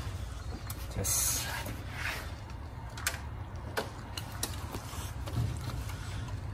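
A few light plastic clicks and rustles from handling a timing light's inductive clamp and plug wire, over a steady low hum.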